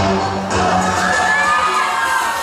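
Loud pop dance music starting suddenly on a sustained low bass note, with an audience cheering and whooping over it from about half a second in.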